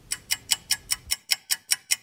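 Rapid, evenly spaced ticking, about five light clicks a second, laid in as a sound effect while the characters are in a hurry.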